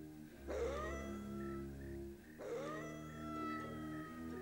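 A wolf howling twice, each howl rising in pitch and then held. The first starts about half a second in, and the second starts about two and a half seconds in and runs nearly to the end, over soft background music.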